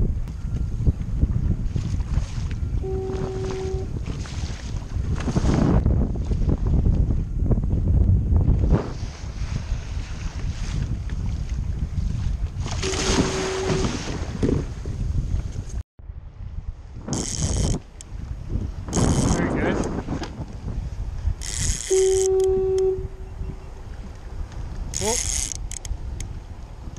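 Wind buffeting the microphone over choppy sea, with waves washing and splashing against a kayak hull in repeated surges. A short steady tone sounds three times.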